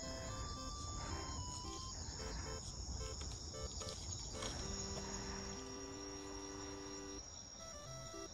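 A steady high-pitched chorus of night insects trilling, with soft background music of short, sparse notes over it.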